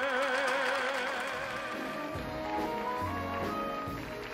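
A held, heavily vibratoed sung note ends about a second in, giving way to the show's big-band studio orchestra playing a rising line of notes over a bass.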